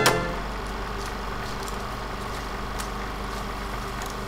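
A brief click as loud music cuts off at the start, then a steady low hum with hiss and a few faint scattered clicks.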